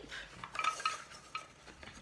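A hand rummaging inside a cloth feely bag packed with 3D shapes: fabric rustling and the shapes clicking and knocking against each other in a string of small, irregular sounds.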